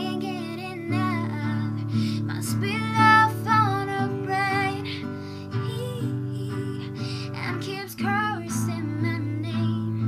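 A young woman singing a slow melody with long, wavering held notes over a strummed acoustic guitar. Her voice stops shortly before the end while the guitar chords carry on.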